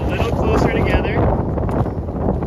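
Wind buffeting the microphone: a loud, continuous low rumble. A voice is heard briefly during the first second.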